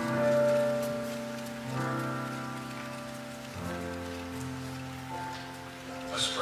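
Slow instrumental church music on a keyboard: sustained chords, each held without fading for about two seconds before the next.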